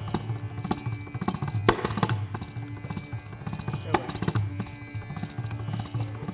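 Carnatic concert music led by mridangam drumming: a quick, dense run of strokes over a steady drone, on an old, band-limited concert recording.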